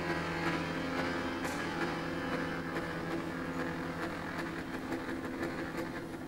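Chromatic button accordion playing soft, sustained chords, the held notes shifting slowly and fading gradually toward the end.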